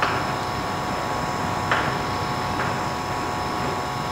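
Steady background hiss with faint steady whining tones from an old archival recording, during a pause in speech; two faint short sounds, one at the start and one under two seconds in.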